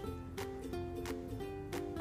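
Quiet background music of plucked string notes, ukulele-like, with a light steady beat.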